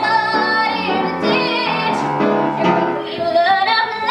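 A woman singing a musical theatre song, holding notes with vibrato, to upright piano accompaniment; her voice slides up in pitch a little after three seconds in.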